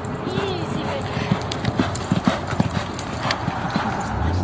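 Racehorse galloping on a dirt track: a quick, uneven run of hoofbeats.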